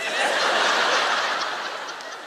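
A studio audience laughing at a joke's punchline. The laughter starts at once and slowly dies down.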